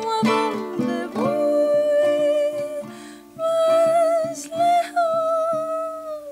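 A woman singing long held notes with vibrato over plucked, strummed guitar accompaniment; about a second in her voice slides down and back up before settling on a held note.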